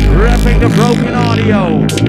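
Loud, bass-heavy electronic dance music from a club DJ set: a deep sub-bass note under swooping, bending pitched sounds. A fast drum and bass beat cuts in near the end.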